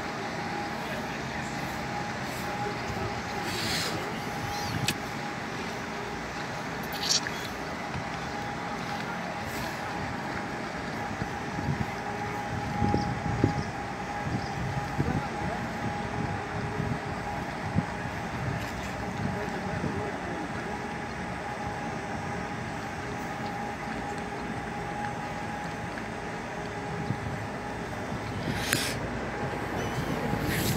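Swing bridge's drive machinery running as the road deck swings closed, a steady sound with a constant high tone, broken by a few short clicks and knocks.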